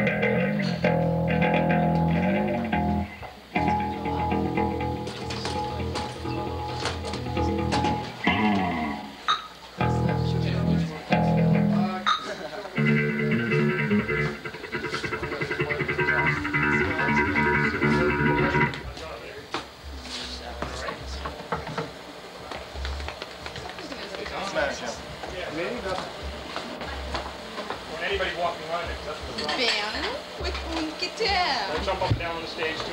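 Live band music: full held chords over a bass line, then, about two-thirds of the way in, the music thins and drops in level to a low held note with scattered low thuds.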